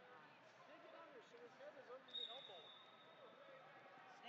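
Faint overlapping voices of spectators and coaches echoing in a large indoor wrestling venue, with light thuds. A brief, thin, high tone sounds about two seconds in.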